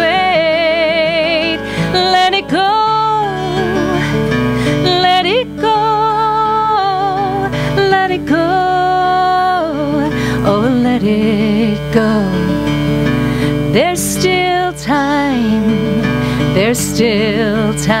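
A woman singing long, wavering held notes to a live acoustic guitar accompaniment.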